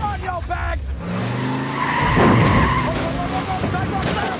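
A car engine revving up, then tyres squealing hard in a skid about two seconds in, the loudest sound here. A voice is heard briefly at the start.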